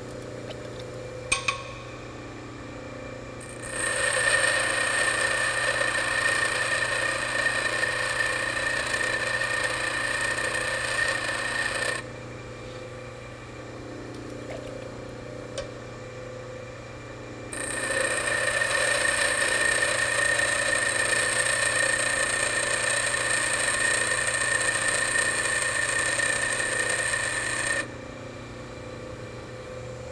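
Bench grinder running steadily while a high-speed steel lathe tool bit is pressed against the wheel in two passes of roughly eight to ten seconds each. Each pass is a loud, even grinding hiss with a high ringing tone, and each cuts off sharply back to the grinder's plain running hum. The bit is being ground to a slanted clearance face.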